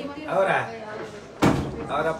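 Indistinct voices, then a single sharp bang about one and a half seconds in.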